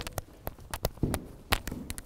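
Irregular light taps and clicks from a person's movement, about ten in two seconds, as he balances on one leg and gives the raised foot a small shaking jerk.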